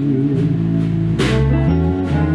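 Instrumental music led by an electric guitar, with sustained notes over low bass notes that change every half-second or so, and a sharp hit just past halfway.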